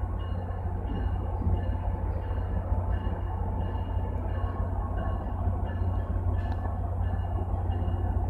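Steady low rumble of MBTA commuter rail trains standing stopped side by side, their diesel locomotives idling.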